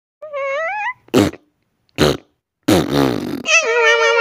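Cartoon sound effects: a short, wavering, rising fart-like squeal, then three quick wet pops. Near the end a chorus of tiny high-pitched creature voices begins, from the small green blob creatures.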